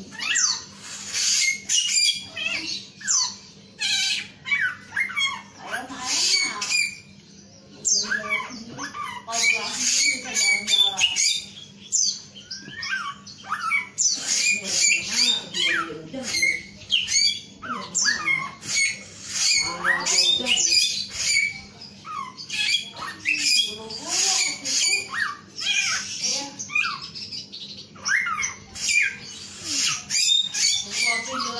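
Caged male samyong songbird singing energetically in a long run of rapid, varied whistled and chattering phrases that sweep up and down in pitch, broken by a couple of short pauses.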